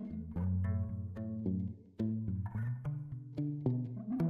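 Background music: a bass line of short, separate notes stepping up and down in pitch, breaking off briefly just before two seconds in.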